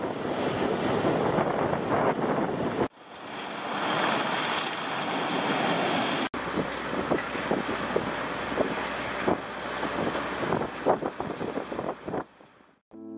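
Sea waves breaking and surging against rocks and concrete breakwater blocks, with wind buffeting the microphone. In the second half, surf washes over a pebble beach with many short clicks of stones knocking together. The sound cuts off sharply about three seconds in and again about six seconds in.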